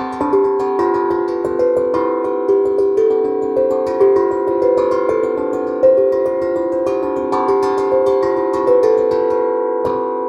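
8-inch Amahi steel tongue drum played with mallets: a melody of struck notes, two or three a second, each ringing on and overlapping the next.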